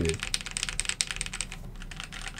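Fast typing on a Keychron Q1, a 75% mechanical keyboard with an aluminium case, gasket mount and Gateron Phantom Brown switches: a dense, unbroken run of keystroke clacks, many per second.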